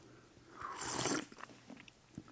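A person taking one slurping sip of tea from a cup, an airy intake of about a second, followed by a few faint mouth clicks as it is tasted.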